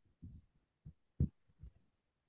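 A few short, soft low thumps, the loudest a little past halfway, with near silence between them.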